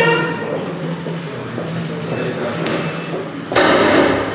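Indistinct background voices and hall noise over a steady low hum. A single sharp knock comes about two and a half seconds in, and a louder burst of noise near the end.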